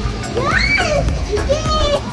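A young child's high-pitched voice calls out twice, the first call rising in pitch, over the sound of children playing and background music with a steady beat.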